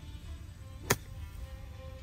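A golf iron striking a ball from grass: one sharp click about a second in.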